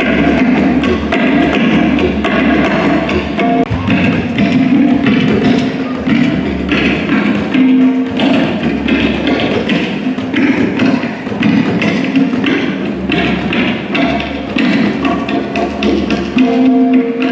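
A tabla played solo in a fast, continuous run of strokes: the treble drum rings at a steady pitch and the bass drum booms underneath.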